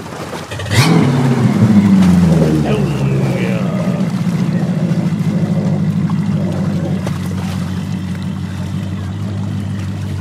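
Mercury outboard motor on a bass boat: a sharp knock about a second in, then the engine note rises as it takes up the throttle and runs on steadily as the boat moves off.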